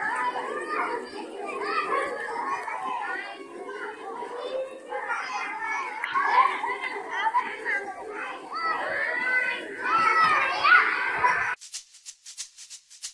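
Many children's voices at once, calling out and chattering as a group. The voices stop suddenly near the end, and a shaker rattle starts.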